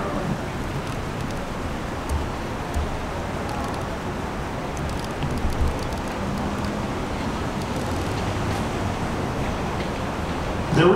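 NYC subway 7 train approaching the station through the track switches: a steady low rumble with a few low thuds from the wheels, against station ambience.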